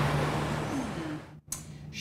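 City street traffic with a steady engine hum, fading and then cutting off abruptly about one and a half seconds in, followed by quiet room tone.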